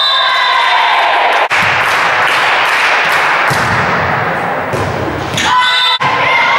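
Volleyball rally in a gym: a series of sharp thuds as the ball is struck and hits the floor, echoing in the large hall, with players calling out.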